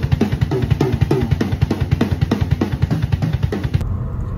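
Acoustic drum kit played hard and fast: rapid strokes on the snare and toms over quick kick drum beats, with cymbals. It cuts off suddenly near the end.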